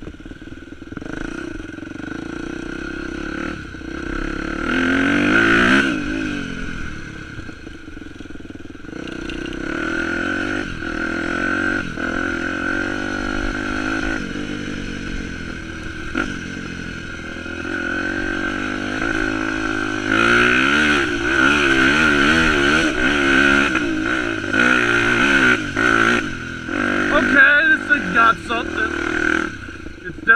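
A 250cc four-stroke dirt bike engine being ridden, its revs climbing and dropping as the rider accelerates and shifts, with the revs rising hard about four seconds in and again through the second half.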